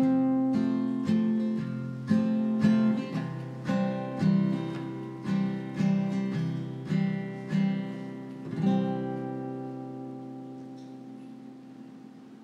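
Acoustic guitar playing the closing bars of a folk song: a run of picked and strummed strokes, then a last chord about nine seconds in that rings out and fades away.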